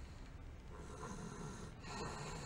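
A sleeping toddler snoring softly, the snoring of a child who is worn out.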